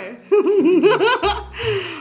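A person laughing: a quick run of about eight 'ha' pulses in a second, then a breathy exhale near the end.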